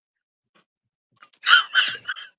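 A man laughs briefly, starting about a second and a half in.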